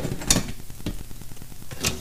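Stainless steel coffee pot being set onto a stainless steel rocket stove's fold-out pot holders: a few light metal clicks and knocks.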